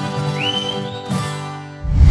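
Accordion and acoustic guitars holding the final chord of a sertanejo song as it dies away, with a sharp rising whistle from the audience about half a second in. Right at the end a deep whoosh swells in.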